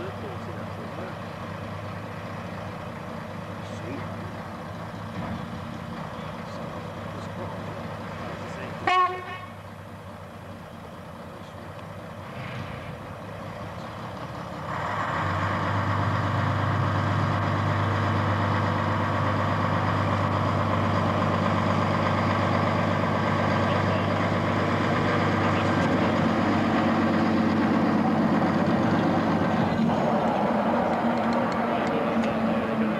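Diesel shunter's engine running steadily, with one short horn toot about nine seconds in. From about halfway through the engine opens up and runs much louder as the locomotive moves closer.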